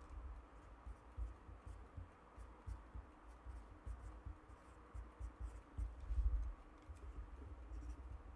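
Pen strokes scratching faintly on paper as a cartoon is sketched, with soft low bumps now and then, the loudest a little past the middle.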